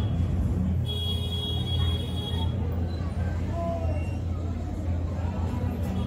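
Steady low background rumble, with a faint high steady tone for over a second from about a second in.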